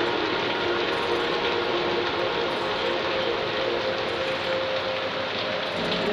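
Heavy rain falling on a corrugated roof: a dense, steady patter of countless drops.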